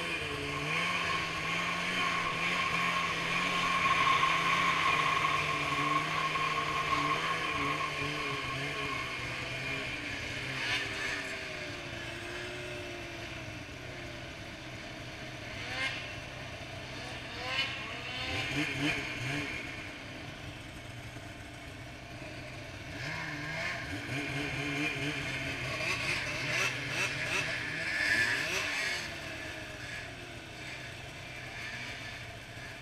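Polaris Switchback Assault 144 two-stroke snowmobile running along a trail through a Bikeman Velocity trail-can exhaust. The throttle rises and falls, with several revs in the second half.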